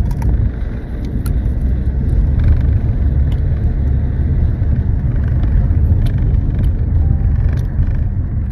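Steady low rumble of a car on the move, heard from inside the cabin, with a few faint clicks over it.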